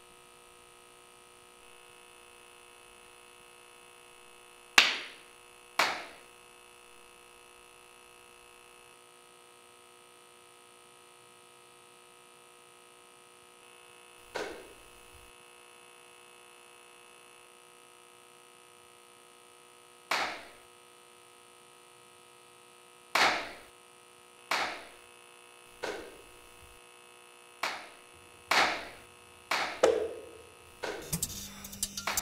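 Single sharp hand claps, about ten of them, irregularly spaced and coming faster in the last several seconds, each with a short echo off the corridor walls: the hider's cues in a game of clap and seek. A faint steady electrical hum runs underneath.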